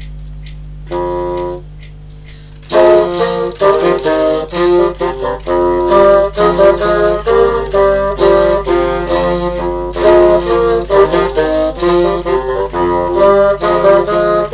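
Several multitracked bassoon parts playing a melody in harmony: two short held chords, then from about three seconds in a louder, busy passage of quick notes.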